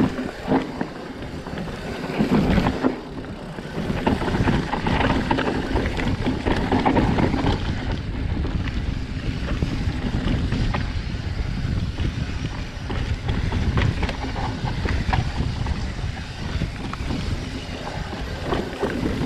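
Giant Reign full-suspension mountain bike riding down a dry dirt trail: tyres rolling over loose dirt and rocks with a steady low rumble, frequent clicks and rattles from the bike over bumps, and wind buffeting the microphone.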